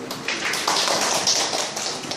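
Audience applauding: many people clapping their hands together, starting about a quarter second in and thinning out near the end.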